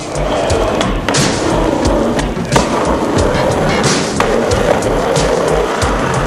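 Skateboard wheels rolling on asphalt, with a few sharp clacks of the board, under background music with a steady beat.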